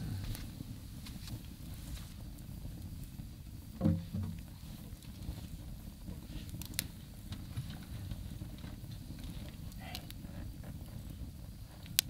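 Wood fire crackling in a fire pit, with a few sharp pops over a steady low rumble; a brief, louder low sound about four seconds in.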